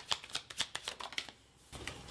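A deck of tarot cards being shuffled by hand: a quick run of soft card flicks that stops a little past halfway, with one last flick near the end.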